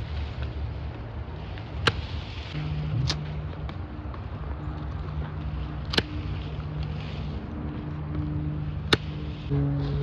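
Hand pruning shears snipping branches off a bamboo culm: four sharp snips a few seconds apart. A steady low hum comes and goes underneath.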